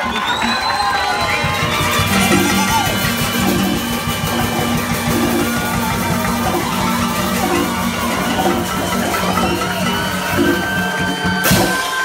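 Comparsa street band of bass drum, snare and hand cymbals playing a driving beat under a held low note, with the crowd shouting and whooping over it. A brief loud crash comes near the end.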